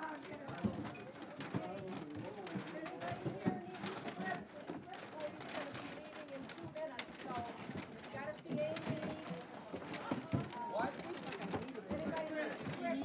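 Many people talking over one another in a crowded room, with paper bags rustling and canned goods knocking as they are packed.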